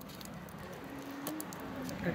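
Light clicks and taps as a small decoration is pressed into place on a plastic clock face, with a faint hummed voice from about a second in.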